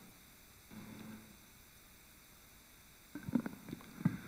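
Near silence of a meeting room, with a faint low sound about a second in and a few soft knocks and thuds near the end.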